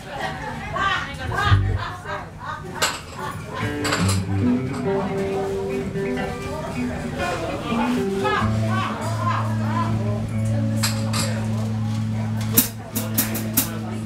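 Voices chattering in a bar while an amplified instrument picks out a few loose notes. From about halfway through it holds one low, steady note, with a few sharp clicks near the end.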